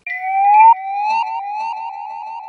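A loud siren-like sound effect. It opens with one long rising whoop that breaks off sharply, then repeats as shorter and shorter rising sweeps that come faster and slowly fade.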